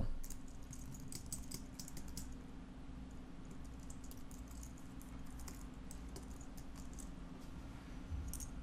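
Faint typing on a computer keyboard: a run of quick, light key clicks, thinning out later, over a steady low hum.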